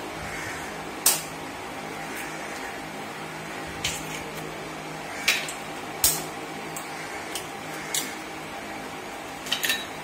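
A metal spoon tapping eggshells to crack them over a ceramic bowl: sharp clicks every second or two, the loudest about a second in and a quick pair near the end, over a steady low hum.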